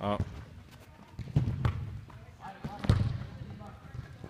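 Soccer balls being kicked and passed on indoor artificial turf: several sharp thuds at uneven intervals in a large hard-walled hall, with children's voices in the background.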